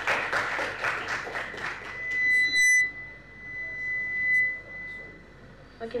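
Audience applause for about two seconds, then a steady high-pitched whine of PA microphone feedback that holds for about three seconds, loudest just before the three-second mark.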